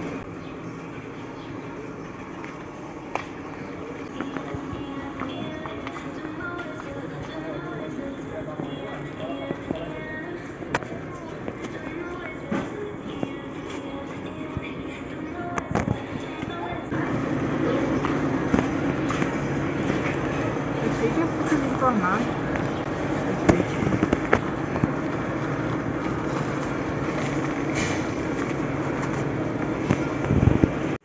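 Busy warehouse-store ambience: a metal shopping cart rattling and clicking as it is pushed over the concrete floor, with a murmur of other shoppers' voices and music in the background. It grows louder about halfway through.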